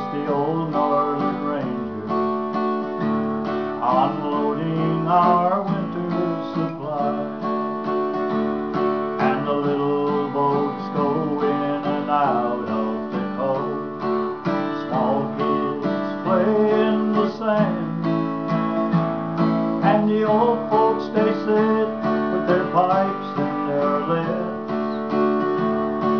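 Man singing a folk song to his own strummed acoustic guitar.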